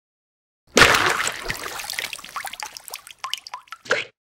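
Liquid splashing: a sudden splash a little under a second in, dying away into bubbling and dripping over the next few seconds.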